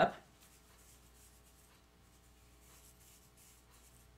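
Faint, soft scratchy rustling of fingers teasing hair at the crown, coming twice, over a low steady room hum.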